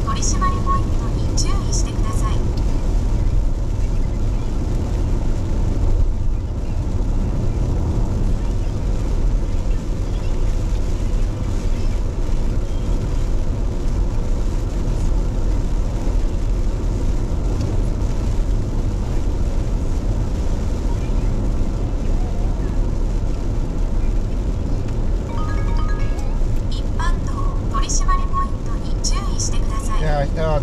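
Steady road noise heard from inside a car driving on a wet highway: a low drone from the tyres and engine, with tyre hiss from the rain-soaked road.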